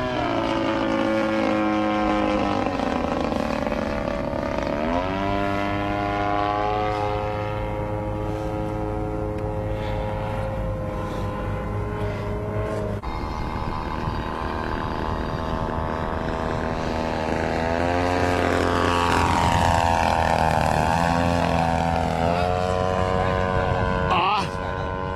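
A large radio-control model MiG-3 flying overhead on its 50 cc gasoline engine, the engine and propeller running steadily. The pitch rises and falls several times as the plane passes and the throttle changes, with a sudden jump about halfway through.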